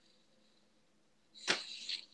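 Near silence, broken about one and a half seconds in by a single short, sharp noise, with a faint hiss trailing after it.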